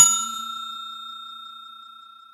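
A notification-bell ding sound effect: one bright bell chime ringing out and fading away over about two seconds.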